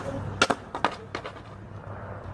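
Skateboard clacking on concrete: a handful of sharp, separate knocks in the first second or so, then it goes quieter.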